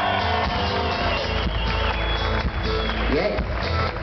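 Live rock band playing, with the keyboard player featured: held keyboard tones over a steady low bass-and-drum pulse, and a short rising glide about three seconds in.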